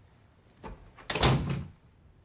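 A door sound: a light knock about half a second in, then a louder sliding thud about a second in that lasts about half a second.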